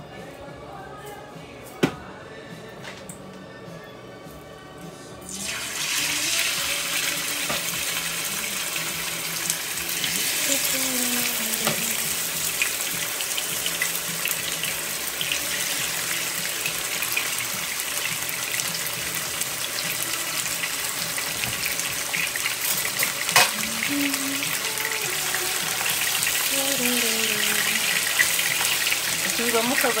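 Chicken fillets sizzling in hot oil in a frying pan: the hiss starts suddenly about five seconds in as the first pieces go into the oil and stays loud and steady, with a single sharp click later on.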